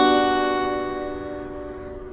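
Acoustic guitar capoed at the second fret, an F major 7 chord shape ringing out after being played and slowly fading away.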